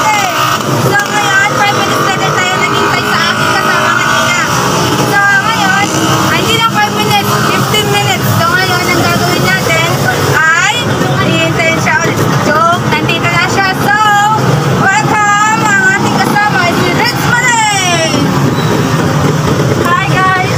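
Street traffic with motor vehicles running and passing, under people's voices.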